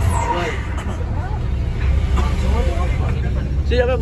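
Steady low engine and road rumble inside the cabin of a moving Mercedes-Benz OH 1526 NG tour bus, with passengers' voices murmuring indistinctly over it.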